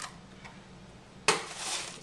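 Quiet kitchen room tone with a low steady hum, then a little over a second in a single sharp tap followed by a brief rustle from handling eggs and the egg carton.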